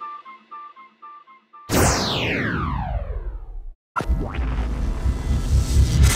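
Outro music. A fading flute-like melody, then about two seconds in a loud sweep falling in pitch that cuts off abruptly, followed by a sudden hit and a low rumble: a logo sting.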